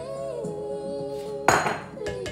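A spoon knocked once against a stainless steel mixing bowl about one and a half seconds in, a sharp metallic clank that rings on briefly, over background music with held notes.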